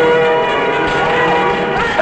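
Church bells ringing, with a fresh stroke right at the start whose tones ring on and fade.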